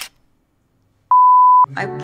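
A single loud electronic beep: one steady pitch lasting about half a second, a little over a second in. A brief click comes right at the start.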